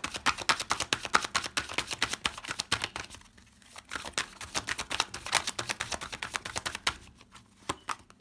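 A Royo Tarot deck being shuffled by hand: a rapid run of card flicks, a brief pause about three seconds in, then a second run that thins to a few single flicks near the end.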